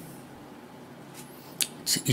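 A pause in a man's speech with faint room hiss, broken about one and a half seconds in by a short, sharp mouth click as his lips part to speak, and a smaller click just after.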